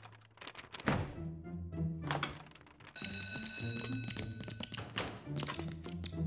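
Cartoon soundtrack music with a bass line, broken by repeated sharp thuds and hits. A high ringing tone sounds for about a second and a half midway.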